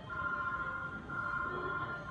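Electronic alarm beeping: a steady two-pitched tone sounding in pulses just under a second long, with short gaps between them.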